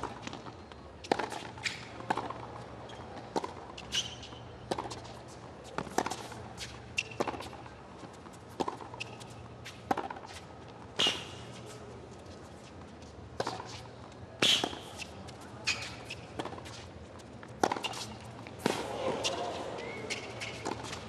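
Tennis rally on a hard court: sharp racket-on-ball hits and ball bounces about once a second, over a hushed crowd. Crowd noise swells near the end.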